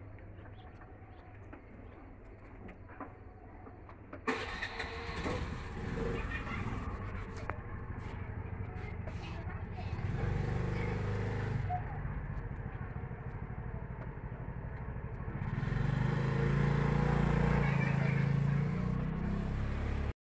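A motor or engine starts abruptly about four seconds in and keeps running with a steady low rumble, growing louder around the middle and again near the end.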